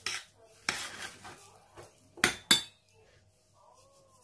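A metal spoon clinking and scraping against a stainless steel bowl while mashed cooked soybeans are stirred. There are several short, sharp knocks; the loudest two come close together a little after two seconds in.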